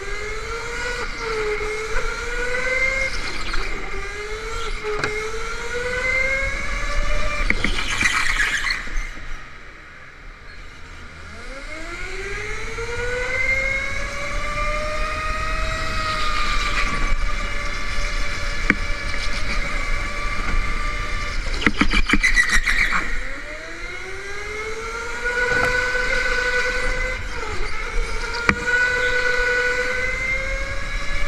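Electric go-kart motor whining, its pitch rising as the kart accelerates out of the corners and falling away as it slows, three times over. Short rasping bursts of noise come at two of the slowest points.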